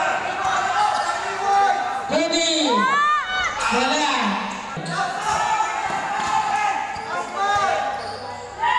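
Basketball being dribbled on a court during a game, with players and spectators shouting out several drawn-out calls in a large covered hall.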